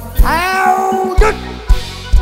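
A performer's long drawn-out cry through the stage microphone, sliding up in pitch and then held for about a second. The band's drum kit then comes in with heavy kick-drum beats.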